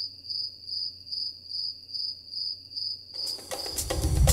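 Cricket chirping, a short high chirp repeated evenly about three times a second, used as the stock comedy sound effect for an awkward silence.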